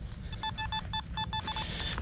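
Nokta Makro Simplex metal detector giving a string of short, identical beeps in quick clusters as the coil passes back and forth over a target. The target reads 76, a high-conductor signal that is probably a dime or a copper penny.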